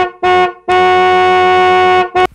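A horn-like beep sound effect for the page's 'BEEP BEEP BEEP': two short beeps and then one long held beep at the same steady pitch.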